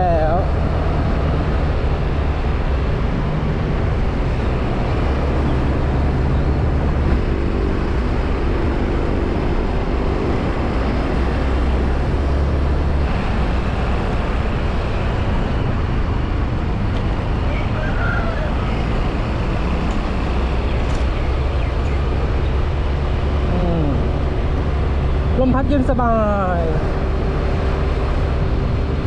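Yamaha Grand Filano Hybrid scooter cruising at about 50 km/h: a steady low rumble of wind and road noise, with a faint hum from its 125 cc single-cylinder engine.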